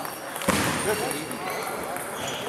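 Indistinct voices in a large sports hall, with a sudden loud, noisy burst about half a second in.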